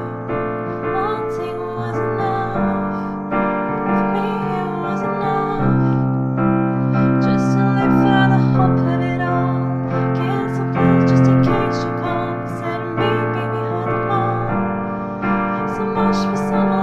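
Piano playing a repeating four-chord progression, F, B-flat major 7, G minor 7 and C, as a steady rhythmic accompaniment. The chords change every couple of seconds.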